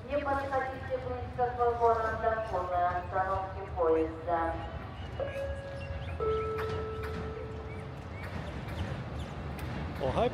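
Station public-address announcement, a voice echoing across the platform, for the first four and a half seconds. It is followed by two long steady tones, the second a step lower than the first, over a steady low rumble of the busy station.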